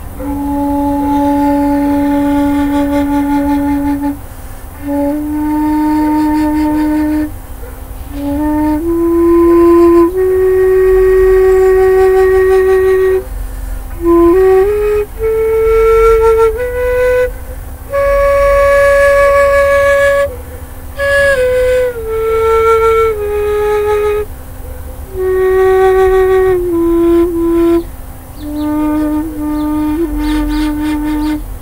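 End-blown bamboo flute in D diatonic minor playing a slow melody of long held notes. The notes step upward to the highest pitch around the middle, then step back down, with short breath pauses between phrases.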